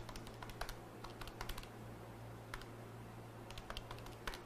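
Faint computer keyboard typing: scattered, irregular soft key clicks.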